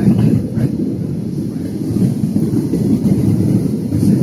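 Airliner cabin noise: a steady low rumble of jet engines and airflow, heard from inside the passenger cabin.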